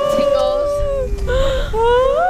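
A young woman's long, high-pitched, drawn-out "whoa" that fades away about a second in, followed by shorter rising exclamations. These are excited, nervous reactions to the sailboat rocking on the waves.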